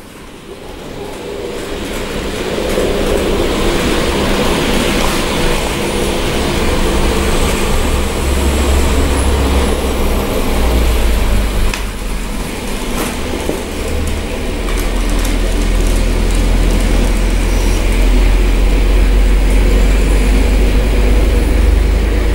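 Atlas N scale two-truck Shay geared model locomotive running along the layout track pulling box cars: a steady rumble of its motor, gearing and wheels on the rails. It grows louder over the first few seconds and stays loud.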